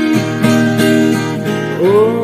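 A song accompanied by acoustic guitar, notes plucked or strummed at a steady pace, with a singing voice sliding in near the end.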